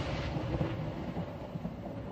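A low, rumbling noise tail left after the hip-hop beat stops, slowly fading out.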